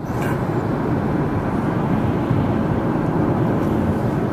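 Steady road and engine noise of a car driving at speed, heard from inside the cabin.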